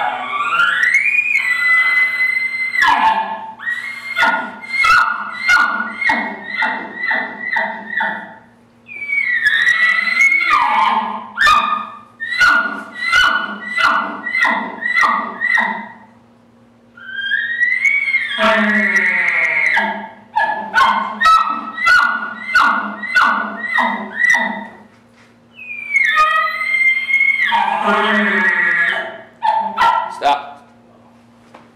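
Imitation bull elk bugling on an elk call blown through a grunt tube: four high bugles, each rising to a held whistle, every one followed by a run of short, quick grunting chuckles about two a second.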